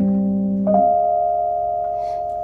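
Electric stage keyboard playing a piano sound: one chord held, then a new chord struck about two-thirds of a second in and left to ring, slowly fading.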